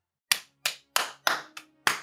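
A person clapping their hands: six sharp claps, about three a second, in a short burst.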